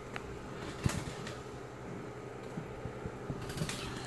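Faint steady hum of bench equipment, with a few light clicks and taps; the loudest click comes about a second in.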